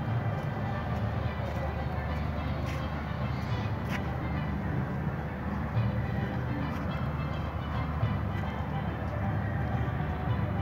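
Outdoor background music mixed with distant voices over a steady low rumble.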